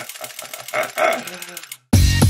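A man laughing in a quick run of short staccato bursts. Music starts suddenly near the end.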